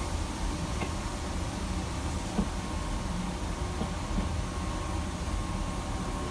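Monorail car running steadily, heard from aboard: an even low rumble and hiss with a faint steady whine over it.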